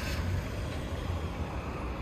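Steady low rumble of motor vehicle engine noise, even throughout with no sharp events.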